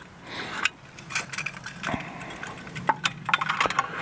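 Light metallic clicks and clinks as the folding legs of a small portable camp stove are folded in and the stove is handled, the clicks coming more often in the second half.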